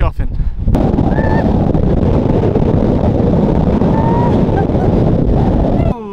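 Strong wind buffeting the microphone: a loud, dense, low rumble that takes over once a man's words end, under half a second in.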